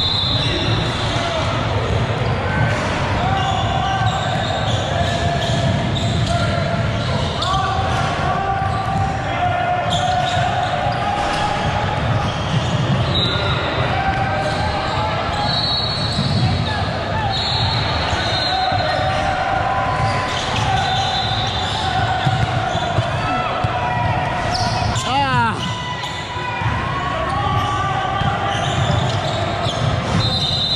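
Basketball game sounds echoing in a large gym: a ball dribbling on the hardwood court, sneakers squeaking in short high chirps, and players and spectators calling out indistinctly.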